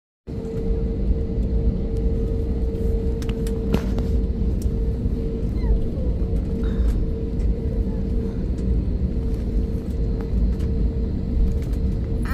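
Cabin noise of a jet airliner taxiing: the engines' steady low rumble with a steady droning hum above it, cutting in abruptly just after the start.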